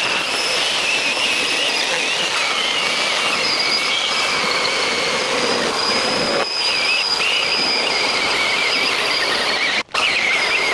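Two cordless mini chainsaws, a Milwaukee M18 hatchet and a Makita, running together and cutting through an oak slab: a steady, high motor-and-chain whine. It drops out for an instant near the end.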